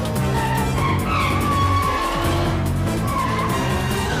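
Action-film soundtrack: music over motorcycle engines running at speed, with tyres skidding.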